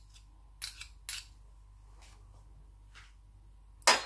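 Metal spoon scraping and clinking against a ceramic soup spoon as butter is knocked off into a frying pan: a few short scrapes and clicks, with one louder click near the end.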